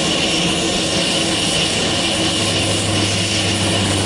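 Single-engine turboprop utility plane running on the ground as it taxis on a dirt strip: a steady engine and propeller noise with a high whine over a low hum, holding one level.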